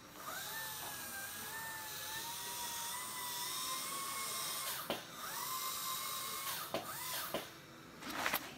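Dental prophy handpiece whining as it polishes teeth with mint prophy paste, its pitch creeping slowly upward. It stops briefly about five seconds in and again near the end, then cuts off.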